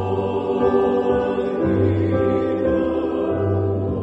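Male voice choir singing in harmony, holding long chords over a deep bass line.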